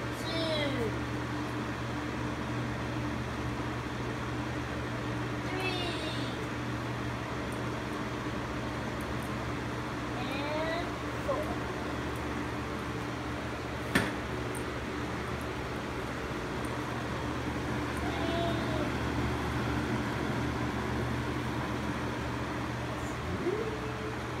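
Lasko wind machine fan running steadily: an even rush of air over a constant low motor hum. There is a single sharp click about fourteen seconds in.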